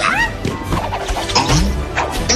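Animated fight-scene soundtrack: score music under punch, whoosh and impact effects, with a short high vocal yelp right at the start and a heavier low hit near the end.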